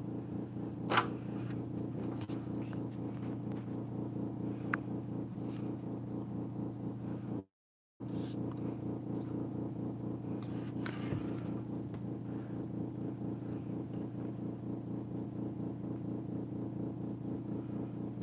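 A steady low hum with a fast, even flutter, broken by a few short clicks as the camera is handled, and cut out for half a second about seven and a half seconds in.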